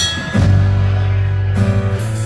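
A live band playing an instrumental moment between sung lines: acoustic guitar strummed and electric bass holding a low note from about a third of a second in.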